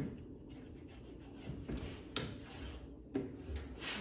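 Flocked vinyl being smoothed down by hand onto a plastic cutting mat: quiet rubbing and scraping strokes across the sheet, with a few light knocks. The pressing seats the corners so the sheet won't lift or catch in the cutter.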